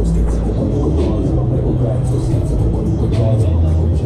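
Loud fairground music playing over the ride's sound system, with the operator's voice on the microphone and a rumble from the swinging ride.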